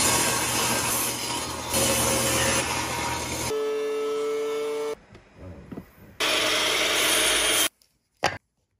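Table saw cutting through a wood block for about three and a half seconds. Then a benchtop thickness planer: first a steady whine, and after a short lull it planes the board with a loud rushing noise that stops abruptly shortly before the end.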